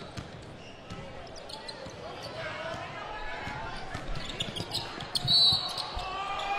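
Basketball being dribbled on a hardwood court, with short scattered bounces and sneaker squeaks over a steady murmur of a crowd in an arena. There is a brief, louder high squeak about five seconds in.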